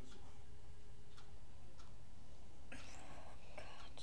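A girl's soft breathy whisper, a little over a second long, near the end, over a steady low hum of room noise with a few faint clicks.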